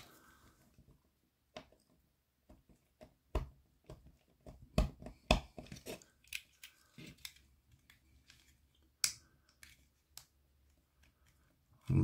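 Small screwdriver turning a flat-headed screw into a plastic model part, the screw cutting its own thread in the plastic: a scatter of faint, irregular clicks and scrapes of metal on plastic, a few sharper clicks around the middle.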